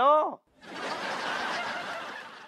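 Sitcom laugh track: a crowd laughing, swelling in about half a second in after a spoken line and holding steady, starting to fade near the end.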